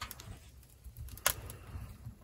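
Wood fire crackling in an open-doored sheet-metal camp stove: scattered sharp pops over a low rumble, with one louder pop a little past a second in.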